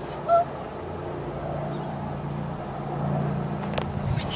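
Steady low hum of a distant engine, growing louder toward the end, with one short high chirp about a third of a second in.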